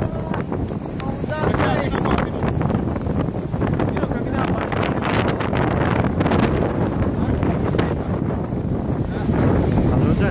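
Strong wind buffeting the microphone over the steady rush of storm waves breaking and washing over the breakwater rocks.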